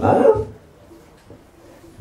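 A man's speaking voice trailing off about half a second in, followed by a pause of faint room noise.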